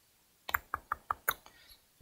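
Clicking at a computer: a quick run of about six short, sharp clicks, starting about half a second in and ending before the second mark.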